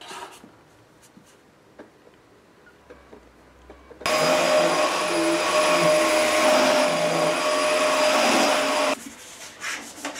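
Upright vacuum cleaner running steadily, a rushing noise with a high whine, starting suddenly about four seconds in and stopping suddenly about five seconds later. Before it the room is quiet apart from a few faint clicks, and light knocks follow it.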